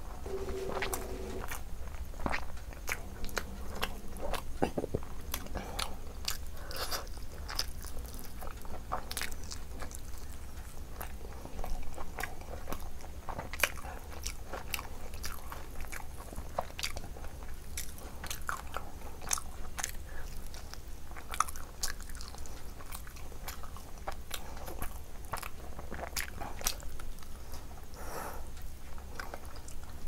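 A person chewing and biting close to the microphone, eating rice, curry and mutton rib meat by hand: many irregular sharp mouth clicks, over a steady low hum.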